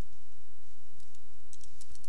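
Computer keyboard typing: a few scattered keystrokes, mostly in the second half, over a steady low hum.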